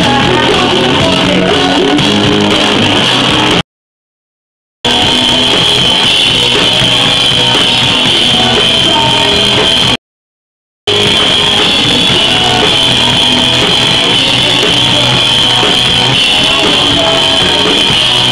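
Live rock band playing loud on an outdoor festival stage, with drum kit and electric guitar, heard close from the stage. The recording cuts to total silence twice, for about a second each time, where the camcorder's sound drops out during zooming.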